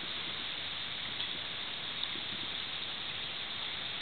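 Steady outdoor background hiss with no distinct events.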